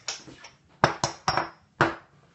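Small porcelain cups set down on a stainless steel counter: four sharp clinks about a second in, the third leaving a brief high ring.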